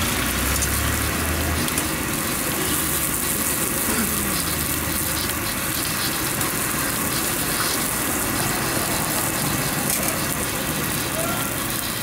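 A commercial gas stove burner running with a steady hiss under a pan of boiling noodle liquid, with a low hum in the first second and a half.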